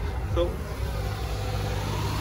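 A motor vehicle's engine running with a steady low hum, nearby road noise.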